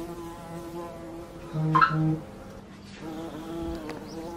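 A steady, pitched buzz that grows louder for about half a second midway through, then falls back.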